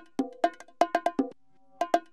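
Sampled bongo loop playing back, cut into slices in a drum plugin: a quick pattern of sharp, ringing bongo hits, with a pause of about half a second near the end.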